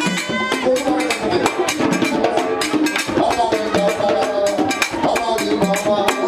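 Haitian hand drums played live in a dense, steady rhythm of sharp strikes, with a man's voice through a microphone over them.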